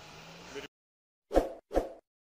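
Two short pop sound effects, about half a second apart, from an animated outro card. They come after a moment of faint street background that cuts off to silence.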